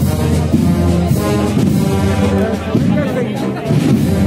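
A wind band (banda de música) playing a processional march for the float, with the brass carrying the tune, and crowd voices underneath.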